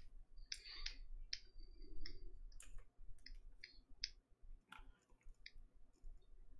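Faint, irregular clicking of computer keys and buttons as the sculpting software is worked, about a dozen separate clicks with uneven gaps.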